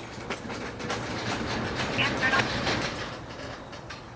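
Freight train of tank cars creeping to a halt, its steel wheels and brakes grinding with scattered clicks and brief squeals. The sound swells through the middle and eases toward the end.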